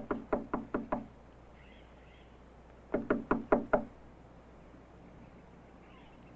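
Knocking on a door: a quick run of about five knocks, then after a pause of about two seconds another run of about five.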